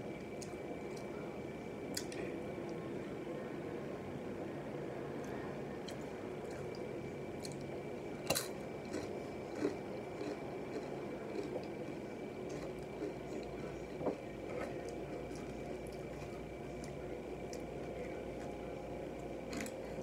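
Close-up mouth sounds of chewing sauce-covered nachos: soft, wet chewing with a few sharp clicks, the loudest about eight seconds in.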